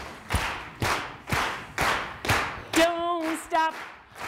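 Hand clapping in a steady beat, about two claps a second, with a short echo after each. Near the end a woman's voice comes in singing held notes over the beat.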